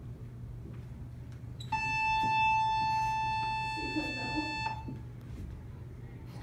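A single steady electronic beep tone, held for about three seconds and starting about two seconds in, over a low steady room hum.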